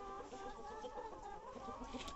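A flock of brown laying hens clucking, several calls overlapping and wavering in pitch.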